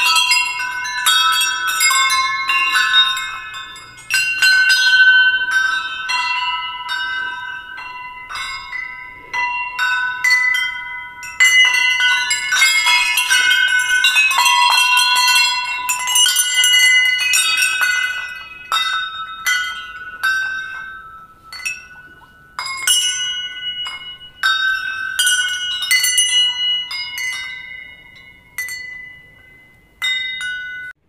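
Hanging brass temple bells rung by hand, many strikes one after another with overlapping clanging tones that ring on. The strikes come thick and fast for most of the time, then thin out and fade toward the end.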